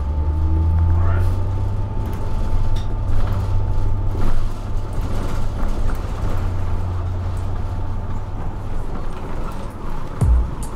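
Inside a city bus under way: a steady low engine rumble with rattles and knocks from the cabin, and a faint rising whine in the first second.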